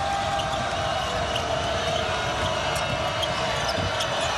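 A basketball being dribbled on a hardwood court during live play, under steady arena crowd noise.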